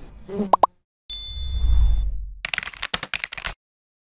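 Cartoon sound effects of an animated logo sting. Two quick rising pops come about half a second in. Then a bright ding rings over a low swell, followed by a rapid run of clicks that stops about three and a half seconds in.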